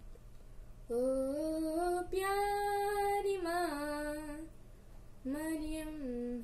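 A boy's voice singing a Hindi hymn to Mary unaccompanied, in long held notes. The phrase breaks off for about a second and a new one begins near the end.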